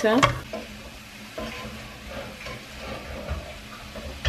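Chicken and stir-fry vegetables sizzling in a frying pan on a gas hob, stirred with a spatula that scrapes against the pan.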